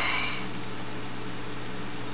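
Steady background hiss with a faint, even low hum: room tone picked up by the microphone.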